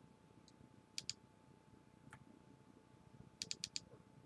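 Quiet clicks at a computer while moving through Street View, over near-silent room tone: two clicks about a second in, one more a second later, and a quick run of about five near the end.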